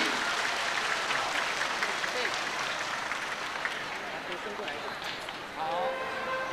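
Crowd applause, a steady even crackle of many hands clapping, with voices faintly mixed in.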